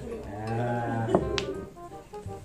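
A person's long, low drawn-out vocal sound lasting about a second, then two sharp clicks of billiard balls being struck, with faint music underneath.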